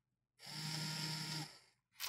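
Small DC gearmotor with a yellow plastic gearbox whirring as it runs at 80% speed for one second, starting about half a second in and then stopping on its own when the timed drive command ends.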